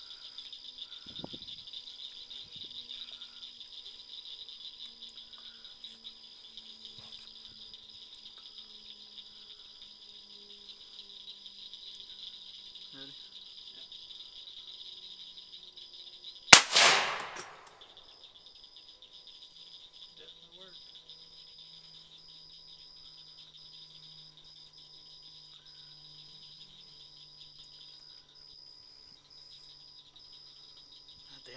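One very loud rifle shot from a short barrel about halfway through, with a brief ringing tail, over the steady chirring of crickets.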